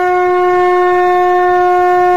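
A single long note blown on a horn-like wind instrument, loud and steady in pitch.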